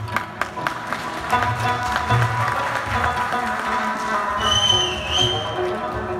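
Afghan rubab played live, plucked notes ringing over rhythmic deep strokes of tabla-style hand drums. A high, slightly wavering tone sounds above the music for about a second near the end.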